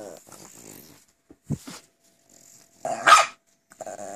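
Pekingese dogs growling at each other in play: a low, wavering growl at the start, a loud sharp bark about three seconds in, and another growl beginning near the end. A short low thump comes about halfway through.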